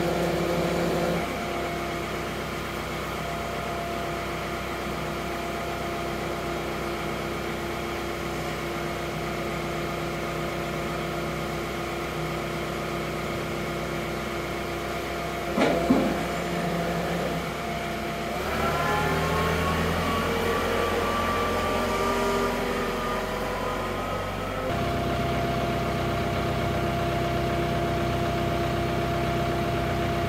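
John Deere compact utility tractor's diesel engine running steadily. About halfway through there is a single sharp knock, then for about six seconds the engine note climbs steadily before falling back to a steady run.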